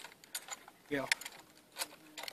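Small metallic clicks and rattles from a rifle's sling hardware and fittings as a Norinco M14 (M305) is swung and brought up to the shoulder: a few sharp, separate clicks.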